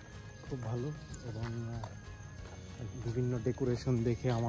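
Music with a voice or singing in it, the voice phrases coming thicker in the last second, over a steady thin high tone.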